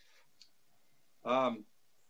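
One short word or filler sound from a man's voice over a video-call connection, about a second and a quarter in, after a faint click; otherwise quiet room tone.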